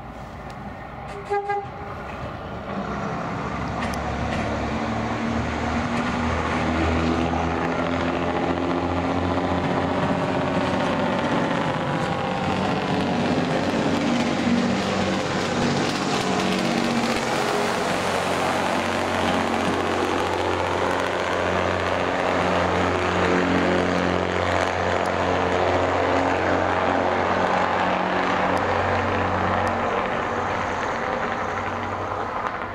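First-generation diesel multiple unit giving a brief horn toot about a second in, then drawing near with its underfloor diesel engines working. The engine note swells as the train passes close around the middle and stays loud as it runs on along the track.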